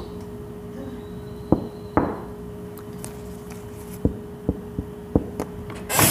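Irregular sharp taps and clicks of a handheld phone being handled, over a steady background hum.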